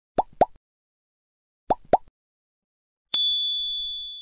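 Sound effects of an animated subscribe button: two quick rising pops, then two more over a second later, as the like and subscribe buttons are clicked, followed near the end by a single bell ding that rings on and fades over about a second and a half as the notification bell is pressed.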